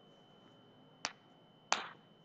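Two faint, sharp clicks of computer keyboard keys, one about a second in and one near the end, over a faint steady high-pitched whine.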